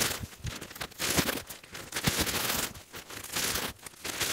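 Newspaper being crumpled and stuffed into a cardboard box as packing padding, in irregular rustling bursts.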